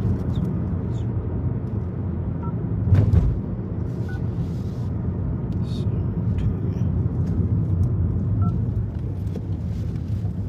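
Steady road and engine noise heard from inside a moving car's cabin, with a brief thump about three seconds in.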